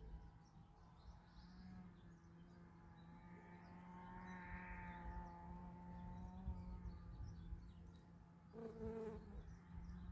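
Faint droning engine hum from a distance, swelling to its loudest about halfway through and then fading, over a steady low hum; a short, stronger tone sounds near the end.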